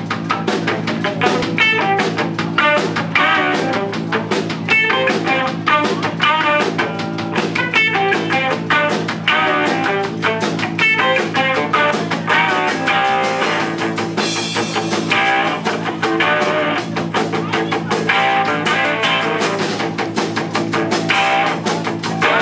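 Live blues-rock band playing an instrumental passage: a Gretsch 6120 hollowbody electric guitar over electric bass and a drum kit keeping a steady beat.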